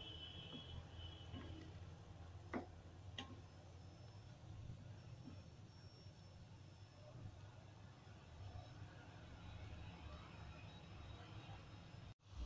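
Near silence with a steady low hum, and two light knocks about two and a half and three seconds in from a spatula stirring soya chunks in a nonstick wok.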